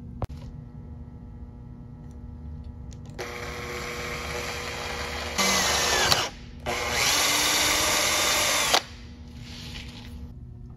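Cordless drill boring a small pilot hole through the metal ring of a control arm bushing bracket held in a vise. The drill starts about three seconds in and gets louder after five seconds. It pauses briefly just past six seconds, runs again, then stops near nine seconds.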